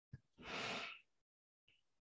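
A woman's single audible breath, about half a second long, with a faint click just before it.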